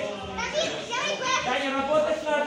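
Children's voices shouting and calling out in a large hall, with several voices overlapping.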